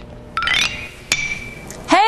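A brief rising swish, then a sharp clink about a second in that rings on as a steady high tone for most of a second.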